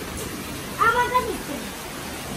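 A short high-pitched call about a second in, rising and then falling in pitch.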